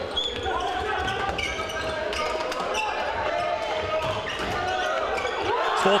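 Indoor floorball play in a sports hall: shoes squeaking on the court floor and players calling out, with light clacks of sticks and ball. Near the end the voices get louder as a goal is scored.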